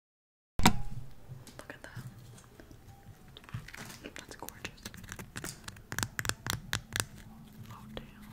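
Silky Gems edible crystal candy, a hard sugar-crusted jelly sweet, being broken apart with the fingers close to the microphone. It makes a loud sharp crack about half a second in, then a run of crisp clicks and crackles that grow denser from about five seconds in.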